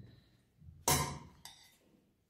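A metal spoon knocking against a glass bowl as cooked rice is scooped out: one sharp clink about a second in and a fainter one half a second later.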